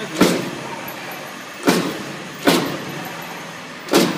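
Silicon steel lamination cutting machine punching and shearing a strip: four sharp strokes at uneven intervals over a steady machine hum.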